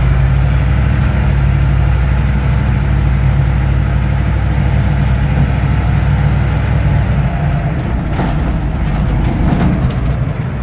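Diesel engine of an AM General military vehicle running steadily as it drives slowly, heard from inside the cab as a continuous low drone. The drone eases slightly in the last couple of seconds, with a few faint clicks or rattles.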